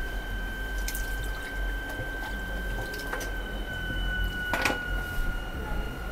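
Faint water sounds with light drips at a salon shampoo basin, with a couple of soft clicks and a steady faint high whine throughout.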